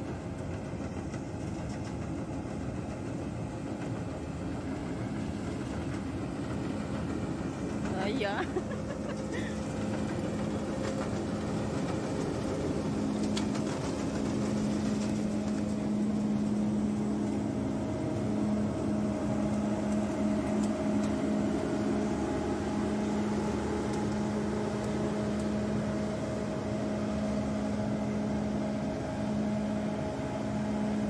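ERO Grapeliner self-propelled grape harvester's diesel engine running as the machine drives along the vineyard row, a steady drone with a humming tone that grows louder over the first half as it comes alongside and stays loud.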